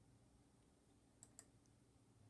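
Near silence with two faint, sharp clicks in quick succession a little past the middle.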